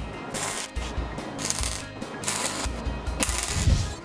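Four short bursts of MIG welding crackle, each about half a second, as pieces of a cast scroll panel are welded together. Background music with a steady beat plays throughout.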